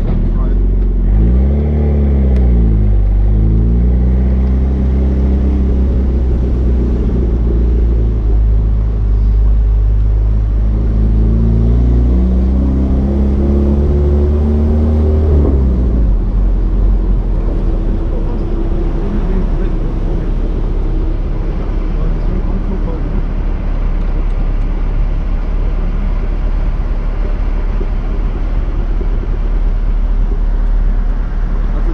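Engine of a Pontiac Fiero-based Ferrari F355 replica under way. Its revs rise and fall over the first few seconds, hold steady, then climb again and drop off about half way through. A steady rush of road and wind noise follows.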